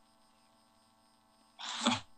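Near silence with a faint steady hum for most of the pause, then, about a second and a half in, a quick breath and the start of a spoken word.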